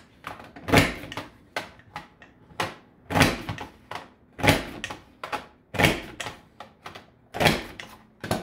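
Border Maker punch cartridge (Sunshine Arches) pressed down repeatedly through yellow cardstock in its paper guide. Each punch is a sharp plastic clack, five loud ones a second or so apart, with lighter clicks between them as the cartridge is repositioned along the strip.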